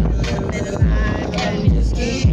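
Music playing on a car stereo: deep bass kicks that drop in pitch, a little under a second apart, with a singing voice over them.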